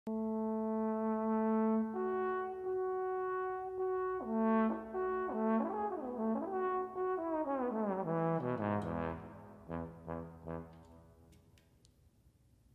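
Trombone playing a slow, warm melody: long held notes, then quicker notes with slides between them, then a falling run into a few low notes that fade away near the end.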